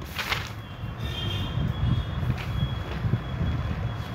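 Steady low background rumble, with a faint, thin, high-pitched tone held for about two and a half seconds and a short hiss just after the start.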